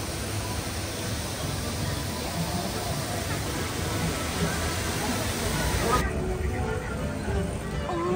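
Steady hiss of a theme-park mist effect spraying fog into a rock gorge, with crowd chatter and music behind it; the hiss cuts off about six seconds in.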